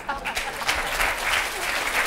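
Studio audience applauding steadily, with voices mixed in.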